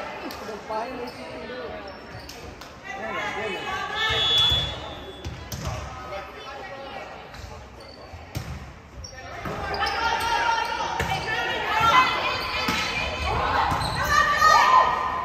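Indoor volleyball rally in a gymnasium: players' voices calling out and the ball being struck, echoing in the hall. The calling swells about four seconds in and grows louder again over the last few seconds.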